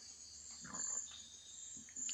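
A quiet pause holding faint room hiss and a steady high electrical whine, with one soft, brief sound a little over half a second in.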